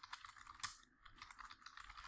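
Faint keystrokes on a computer keyboard in a quick, uneven run as a line of text is typed.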